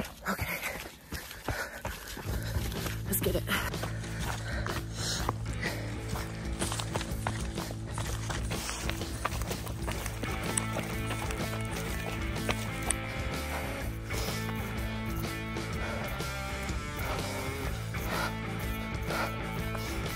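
Background music with held, sustained notes, coming in about two seconds in. Before it, the scuffs and thuds of running footsteps on a rocky trail.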